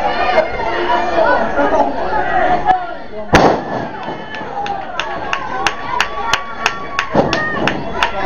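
Crowd chatter and shouting, then about three and a half seconds in a loud thud of a wrestler slamming onto the ring canvas. After it comes a run of sharp slaps or claps, about three a second.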